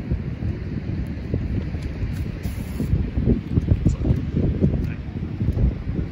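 Wind buffeting the microphone: a loud, irregular low rumble that rises and falls in gusts.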